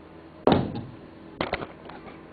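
A dull thump about half a second in that rings out briefly, followed about a second later by a few lighter knocks and clicks.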